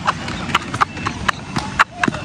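Sharp, irregular knocks and scuffs, about six in two seconds, as a rider tumbles off a hoverboard onto the pavement, with a brief voice in among them.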